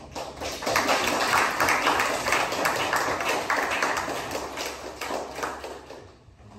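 Audience applauding: many hands clapping in a dense, irregular patter that builds quickly in the first half second and fades away toward the end.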